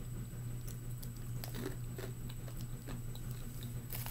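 A person chewing a dry-roasted white bean: a scatter of small, irregular crunches, over a steady low hum.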